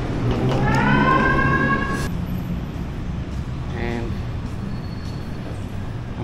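Street ambience with a steady low traffic hum and passers-by's voices. About half a second in, a high-pitched tone rises and then holds for about a second and a half before stopping.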